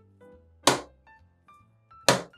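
Cocoa bread dough slapped down hard onto a wooden worktop during hand kneading, one sharp slap about two-thirds of a second in. Soft background music with held notes plays under it.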